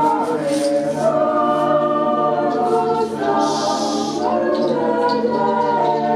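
Choir singing long, held notes in several parts, with a short hissing burst about halfway through.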